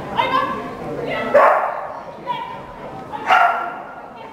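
A dog barking: about four short, high barks roughly a second apart, the second the loudest.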